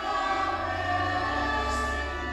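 Choral music with slow, sustained chords, and a deep bass note joining at the start.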